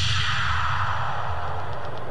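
A falling whoosh of noise sweeping steadily downward over about two seconds, over a low bass rumble: a sweep effect in the electronic backing track played through the stage speakers.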